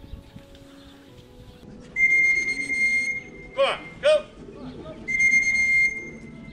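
Two long, steady, high whistle-like tones, the first about a second long and the second a little shorter, with two short swooping pitched calls between them.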